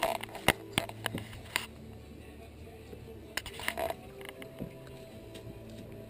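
Music playing in the background, with scattered sharp clicks and knocks: several in the first second and a half, and a few more about three and a half seconds in.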